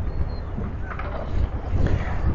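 Wind buffeting the phone's microphone: an uneven low rumble with a steady hiss of wind over it.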